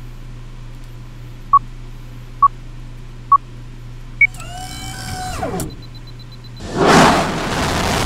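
Film-leader countdown sound effects: three short beeps about a second apart, then a single higher beep. A short falling-pitch sound follows, then a loud rocket-launch roar starts near the end, over a faint steady low hum.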